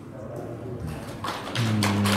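Quiet room tone in a large hall, then about a second and a half in a man's voice starts holding one long, level "uhh" just before he speaks.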